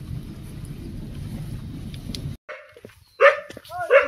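Low rumbling noise that cuts off abruptly after about two seconds, then a dog barks twice near the end.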